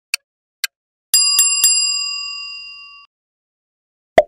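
Quiz-timer sound effect: two last ticks half a second apart, then a bright bell struck three times in quick succession, ringing on and fading over about two seconds, marking the end of the answer time.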